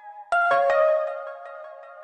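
Electronic outro music: a melody of held, ringing notes, with a new set of notes coming in about a third of a second in.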